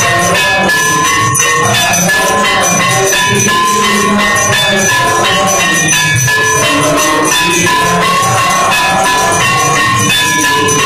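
Temple aarti music: a bell ringing steadily over rapid drum beats and clashing cymbals, all continuous and loud.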